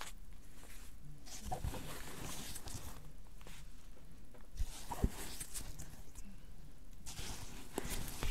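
Hands rustling through skeins of yarn and a burlap bag, setting the skeins down on a wooden table, with a couple of soft thumps about halfway through.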